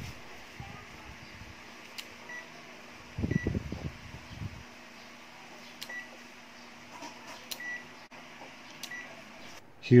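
Peakmeter PM2108 clamp meter's rotary function selector being clicked round, giving several short high beeps while its screen stays blank. This is the fault where the meter powers on and beeps but the display does not come on.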